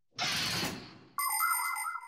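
Cartoon sound effects: a zipper unzipping, a rasping whoosh that fades over about a second, then a short ringing, chime-like sting.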